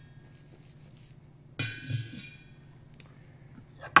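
A charging rod strikes the hollow metal teardrop-shaped conductor once, about one and a half seconds in, and the metal shell rings with a bright clink that dies away within about half a second.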